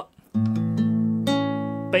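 Acoustic guitar: a chord struck about a third of a second in and left ringing, with further notes plucked over it about a second in, part of a chord-solo fill-in.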